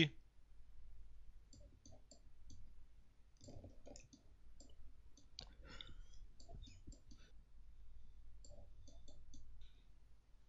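Faint computer mouse clicks, irregular and some in quick pairs, over a low steady hum.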